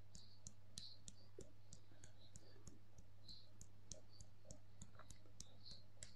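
Faint, even tapping, about three taps a second: the sides of the hands striking together at the side-of-hand (karate-chop) point in EFT tapping. A steady low hum runs beneath it.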